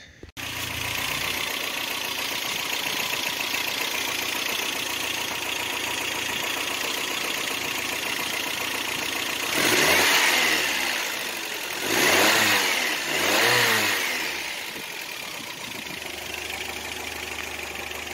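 Toyota 22R carbureted inline-four engine running with its freshly replaced fan clutch and cooling fan turning, a steady whirring idle. Between about 9.5 and 14.5 seconds in, the engine is revved briefly three times, the pitch rising and falling each time, then it settles back to idle.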